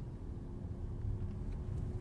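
Cabin noise inside a 2023 Opel Grandland GSe plug-in hybrid pulling away from a standstill. A low road-and-drivetrain rumble grows slightly louder as the car gathers speed, with a faint steady whine above it.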